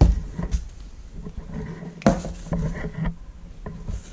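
Handling noise as a welder's earth cable and clamp are lifted out of a cardboard box: a few light knocks and clicks with rustling between them.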